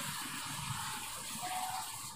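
Faint, steady background hiss with no speech, and a brief thin tone near the end.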